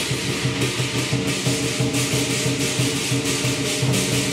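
Southern lion dance percussion: a large drum beaten in a driving rhythm with crashing cymbals and a ringing gong, all played together without a break.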